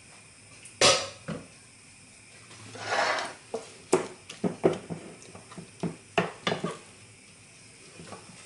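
Utensil knocking and scraping against a glass bowl while stirring a thick carrot and curd-cheese mixture: a sharp knock about a second in, a scraping swell near three seconds, then a run of light clicks.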